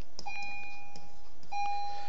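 A steady electronic whine, one high beep-like tone, sounding in two stretches of about a second each with a short gap between them and faint clicks.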